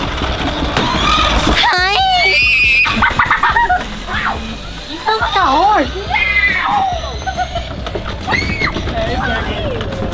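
Girls laughing and shrieking in high, gliding squeals over background music.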